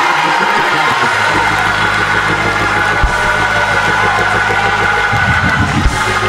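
Church organ holding sustained chords over a low bass note that comes in about a second in, during a praise break, with the congregation cheering underneath.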